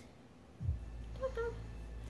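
Kitten giving one short, faint meow about a second in, over a low steady rumble that starts just before it.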